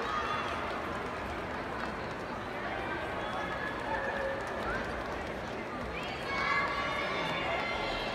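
Spectators chatting in a large ice arena: a steady murmur of indistinct voices, with nearby voices getting louder about six seconds in.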